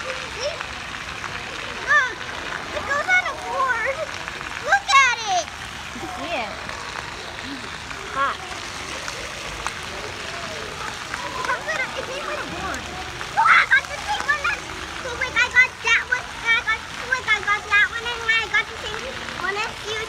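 Water splashing and running steadily on a splash pad, with children's high voices calling and chattering in the background, in bunches a few seconds apart.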